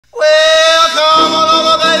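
A male voice sings one long, high held note to open a rock-and-roll song, and backing instruments come in about a second in.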